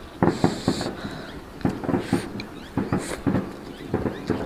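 Close-miked eating sounds: a person chewing a mouthful of stir-fried chicken giblets and rice with lip smacking, in irregular short wet clicks, several a second.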